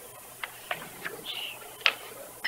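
A few small sharp clicks or taps, four or so spread over two seconds, the last near the end the loudest, with a brief faint squeak in the middle over room tone.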